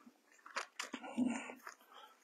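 Faint rustling and a few soft clicks of Bible pages being turned and handled at the pulpit, picked up by the pulpit microphone.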